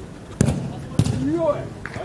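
A futsal ball struck twice on the turf pitch: a sharp kick about half a second in and a second sharp thud about a second in. A short shout follows the second thud.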